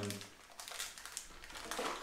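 Plastic soft-bait bag crinkling in several short crackly bursts as it is pulled open by hand.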